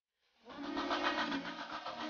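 Tineco iFloor cordless wet-dry floor washer running, its motor and roller brush working across the floor. It comes in about half a second in.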